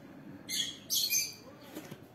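Ballpoint pen writing cursive on a workbook page: two short, high scratchy strokes, one about half a second in and a longer one about a second in.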